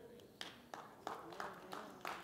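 Scattered, faint hand claps from a few people in an audience, irregular single claps starting about half a second in.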